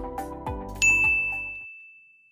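Background music with a beat fading out under a single bright ding chime just under a second in, whose high tone rings on and slowly dies away: an animated logo sound effect.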